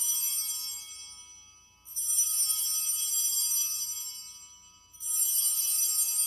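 Altar bells rung at the elevation of the consecrated host: a ring from just before fades away at the start, then two more rings come about two and five seconds in, each starting sharply and dying away. High, bright clusters of tones.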